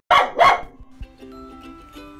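A dog barking twice in quick succession, followed by light background music coming in about a second in.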